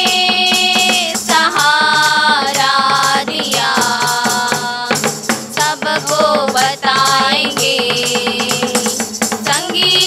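Women singing a Hindi Christian worship song, one voice leading with others joining, over a musical accompaniment with a steady beat.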